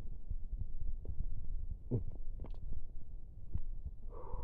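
Low, irregular throbbing rumble of a handheld microphone being moved about, with a few faint clicks and a dull thud about halfway.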